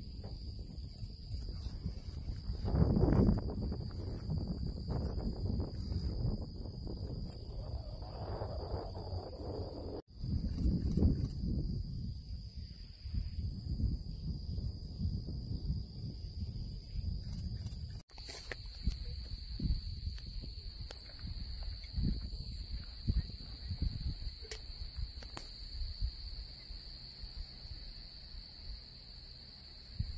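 Outdoor ambience: wind rumbling on the microphone in uneven gusts, over a steady high-pitched drone of insects from the grass field. The sound breaks off for an instant twice.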